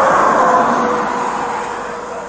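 A tractor-trailer passing on the highway: its road and tyre noise swells and then fades, with a faint tone that sinks slightly in pitch as it goes by.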